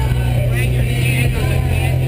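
Motorboat engine running steadily under way, a constant low hum, with a voice mixed over it.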